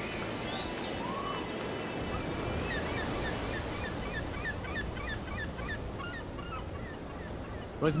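Surf and wind on a shoreline, with birds calling over it in a run of short, falling notes through the middle.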